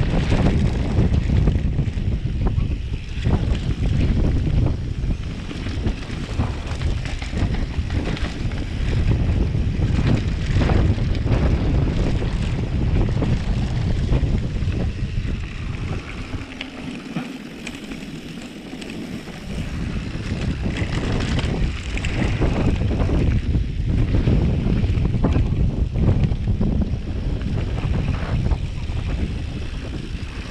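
Wind buffeting the microphone of a handlebar-mounted camera on a mountain bike descending a dirt trail, with the rumble of tyres on dirt and frequent knocks and rattles from the bike over bumps. The wind rumble eases for a few seconds a little past the middle, then returns.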